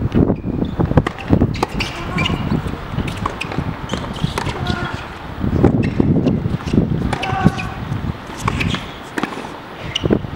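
Tennis ball struck by rackets and bouncing on a hard court during a rally, a few sharp hits heard through heavy wind noise on the microphone, with spectators' voices now and then.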